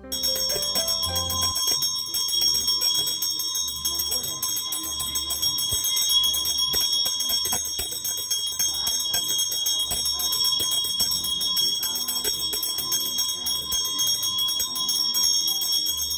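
Small handheld puja bell rung rapidly and continuously during an aarti, a steady high ringing.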